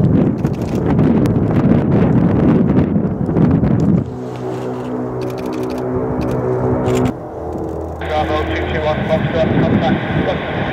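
Antonov An-22's four contra-rotating turboprop engines at climb-out power as the aircraft climbs away overhead. A loud rushing roar lasts about four seconds, then gives way to a steady pitched drone. Near the end a thin, narrow-band radio voice comes in over it.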